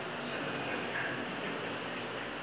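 Steady background noise of a large indoor space with faint, distant voices; no distinct impacts.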